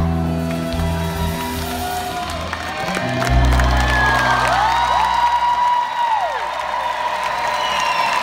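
Live band's last notes ringing out as a held chord over a deep bass note, then the audience cheering and whistling as the song ends, the cheering swelling about halfway through.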